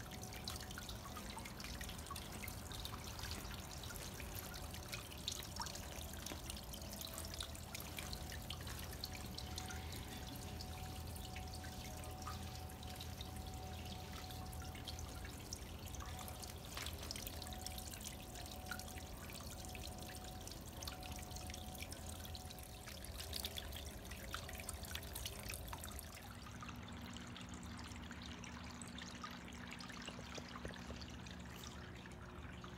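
Water from submersible fountain pumps welling up and splashing at the surface inside a large ceramic pot, a steady trickling with many small drips, over a steady low hum. About four seconds before the end the splashing thins out and a different low hum is left.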